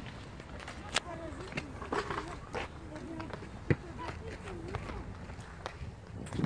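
Footsteps on a synthetic running track as an athlete walks and then steps over low training hurdles, with scattered sharp taps, the loudest about a second in and near the four-second mark. Faint voices are heard in the distance.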